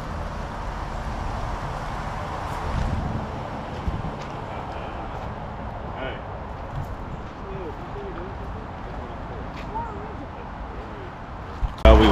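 Steady outdoor rush of wind and open flames from a charcoal fire burning in a pedestal park grill, lit with paper, with a few faint crackles. Indistinct voices are faint in the background.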